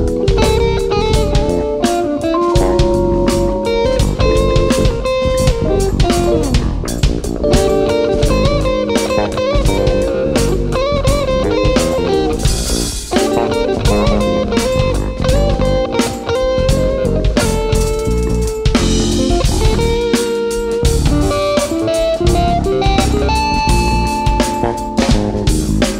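Live instrumental rock: a Strat-style electric guitar plays a lead melody of single notes with bends and vibrato over a drum kit, with cymbal crashes now and then.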